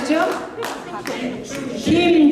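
Hands clapping in applause, thinning out toward the middle.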